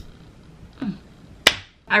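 Quiet room tone with a brief murmur of voice a little under a second in, then one sharp slap-like click about a second and a half in.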